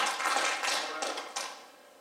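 A congregation's applause dying away, with a few scattered last claps, fading out about halfway through.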